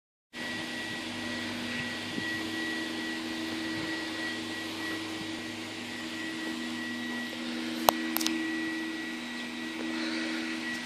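Steady mechanical hum with a whooshing, airy noise and a few fixed tones, broken by two sharp clicks near the end.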